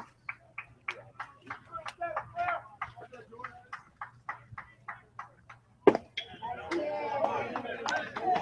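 Faint, muffled speech in the background, with a single sharp click a little before the last two seconds, after which the background grows louder.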